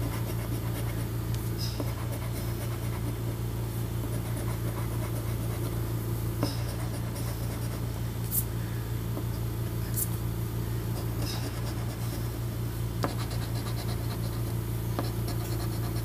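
A coin scratching the latex coating off a lottery scratch-off ticket in steady scraping strokes, with a few sharp ticks of the coin on the card.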